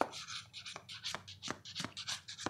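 Fingers tapping on a cardboard card box in a steady series of crisp taps, about three a second, with light rubbing between them.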